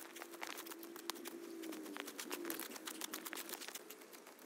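A small hand tool striking and scraping at snow-covered grass, twigs and ground in quick irregular clicks and knocks, with a faint wavering hum underneath.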